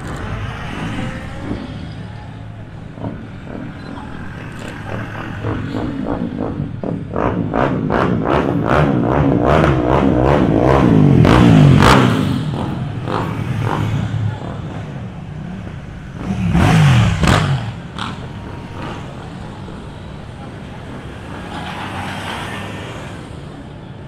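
Engines of a slow motorcade driving past one after another. A motorcycle grows louder with a rapid pulsing exhaust and passes about halfway through. A shorter loud burst of engine with a dip and rise in pitch follows a few seconds later, and crowd voices are faintly mixed in.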